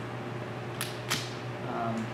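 Two short, sharp handling noises about a third of a second apart, near the middle, as supplies are picked up off a table, over a steady low room hum.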